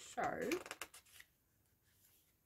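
Paper pages of a pattern booklet being opened and turned: a quick run of crisp rustles and flicks that dies away after about a second.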